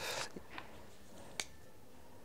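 Quiet room with one light, sharp click about a second and a half in, from fingers handling paper sticky notes on a wooden table.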